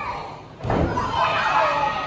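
A wrestler's body slamming onto the wrestling ring mat once, a single heavy boom about half a second in, with voices shouting right after.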